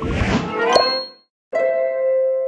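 Cartoon transition sound effects: a swishing sweep with a bright ding just under a second in, cut off by a short silence, then a held, ringing musical tone starting about a second and a half in.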